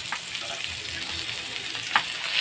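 Pork chops sizzling in a hot frying pan, with one sharp click near the end.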